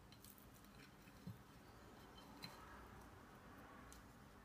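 Near silence, with a few faint light knocks and clicks as hands work a dry spice rub into raw lamb chops on a plate and lift the ceramic spice bowl.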